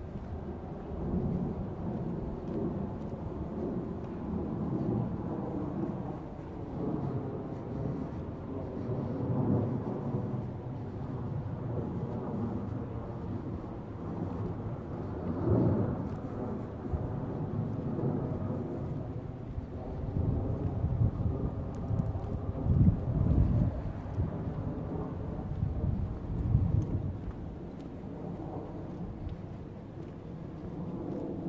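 Wind buffeting the camera's microphone: an uneven low rumble that swells and drops in gusts, strongest in the later part.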